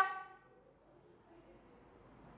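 A woman's held, pitched exclamation fades out in the first half second. Then near silence: room tone.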